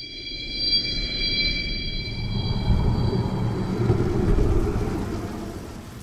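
Transition sound effect for an animated graphic: a low rumble that swells up and then fades away, over a high chord of several steady tones that fades out during the first few seconds.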